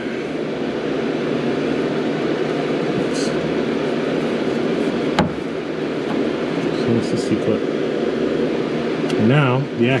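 Steady mechanical hum of running machinery, with one sharp metallic click a little past halfway through.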